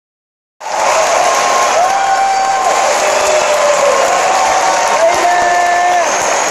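Audience applauding and cheering, starting abruptly about half a second in. Several long held tones rise in and fall away over the clapping.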